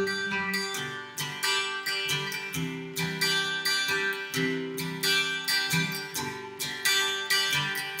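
Acoustic guitar strummed in a steady rhythm, the chord changing every couple of seconds, with no voice over it.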